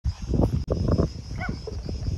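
Irregular low rumbling on the microphone, like wind buffeting, over a steady high-pitched drone, with a few short pitched animal-like calls.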